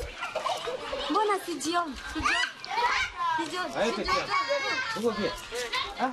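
Children's voices calling and chattering, mixed with adult speech.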